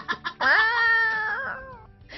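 A woman's long wailing cry after falling to the floor, rising in pitch at first, held for about a second, then dropping away.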